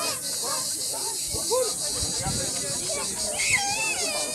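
Children's voices and chatter at a playground, with a high-pitched child's squeal near the end. A steady high hiss pulsing about five times a second runs underneath.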